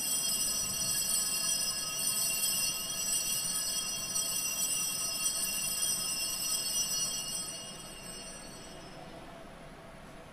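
Altar bells rung continuously at the elevation of the host after the consecration, a cluster of high, bright ringing tones. The ringing stops about eight seconds in and dies away.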